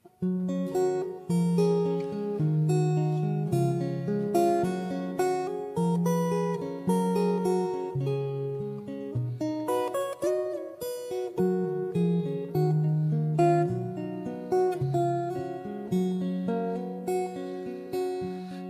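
Solo acoustic guitar played live, a steady run of ringing plucked notes over changing bass notes: the instrumental introduction to a song, before the vocal comes in.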